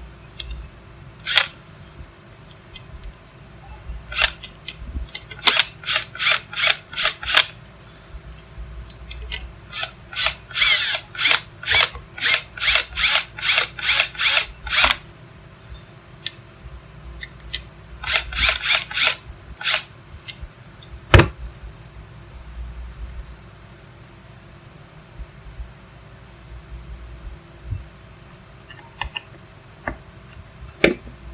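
Milwaukee 18-volt cordless drill driving screws into a 50 amp plug, run in short trigger bursts, often about two a second in runs of several. A single sharp knock comes about two-thirds of the way through.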